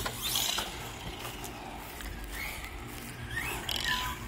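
RC monster truck's electric motor and drivetrain running on a 2S battery, whining up in a few short rising pitches as the throttle is punched.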